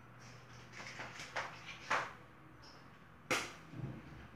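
A few light clicks and knocks of kitchen handling, the loudest a sharp click late on followed by a soft low thump, over a faint steady hum.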